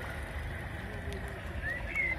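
Outdoor background noise: a steady low rumble with a few short, high chirps, one rising near the end.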